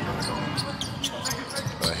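A basketball being dribbled on a hardwood court, a run of sharp bounces at about three a second, echoing in an arena.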